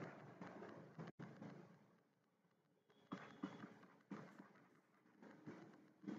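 Near silence: faint room tone with a few brief, soft noises scattered through it.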